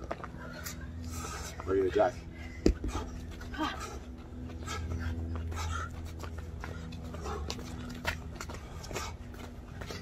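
People breathing hard during a jumping workout, with a few sharp taps of sneakers landing on concrete and a brief spoken word about two seconds in.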